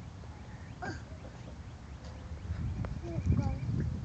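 A toddler's short vocal sounds and squeaks over a low rumble that grows louder in the last second and a half.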